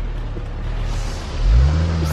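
A motor vehicle's engine running close by, rising in pitch and getting louder about a second and a half in as it accelerates.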